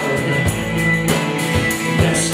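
Live rock band playing: guitars over a drum kit keeping a steady beat of about two hits a second.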